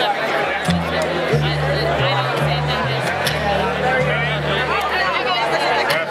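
Upright double bass playing a solo line of low notes, each held about half a second to a second before stepping to the next pitch. Audience chatter runs over it.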